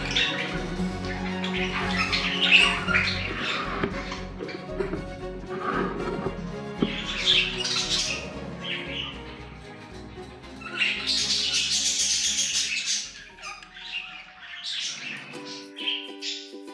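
Background music with budgerigars squawking and chattering over it in several bursts, the longest near the end.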